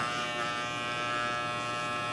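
Electric hair clippers running with a steady buzz, their blade held against a kiwi and shaving through its fuzzy skin into the green flesh.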